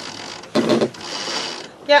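Sailing-yacht sheet winch clicking on its ratchet pawls as turns of the sheet are wound onto the drum ahead of a tack, loudest about half a second in.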